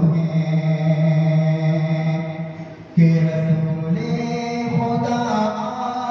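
A qari's melodic chanted recitation, one man's voice into a microphone. He holds one low note for nearly three seconds, breaks off briefly for breath, then resumes and climbs to a higher pitch about four seconds in.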